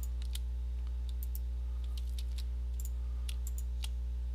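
Irregular clicks of a computer mouse and keyboard, about a dozen in four seconds, some in quick pairs. Under them runs a steady low hum.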